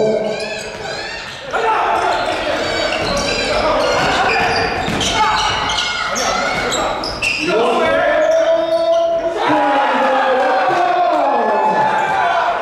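Basketball bouncing on the hardwood floor of a large gym during play, with players and bench calling and shouting throughout, the sounds echoing around the hall.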